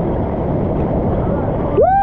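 Steady rush of churning waterfall water, heavy in the low end and dull in the highs. Near the end a man gives one loud yell.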